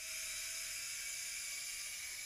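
Steady electronic hiss of recording noise with a faint thin hum, switched in and cut off abruptly by an audio edit.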